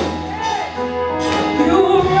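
Live gospel music: women singing into microphones over a band, with sustained low bass notes underneath and a couple of sharp percussion hits just over a second in.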